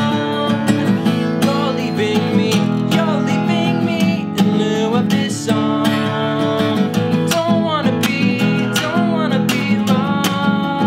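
Acoustic guitar strummed steadily, with a man singing over it in places.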